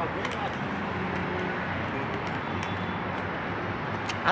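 Steady low street and traffic hum with a few light clicks and faint muffled voices.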